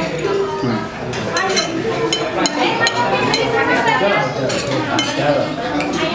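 Metal spoon and fork clinking and scraping against a plate while eating, a scattering of sharp clinks, over a steady background of voices.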